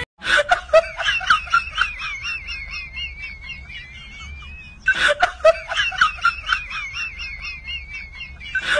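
High-pitched laughter from a short sound clip played on a loop; it fades off and starts over the same way about five seconds in.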